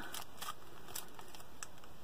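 Plastic candy bar wrapper being handled: faint, scattered crinkles and crackles.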